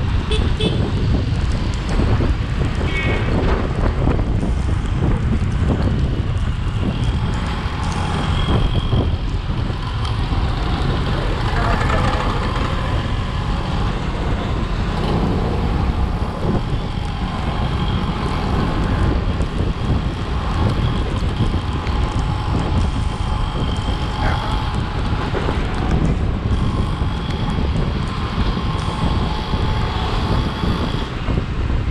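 Wind rushing over the camera microphone on a moving motorcycle, with engine and road-traffic noise beneath it. Vehicle horns sound several times.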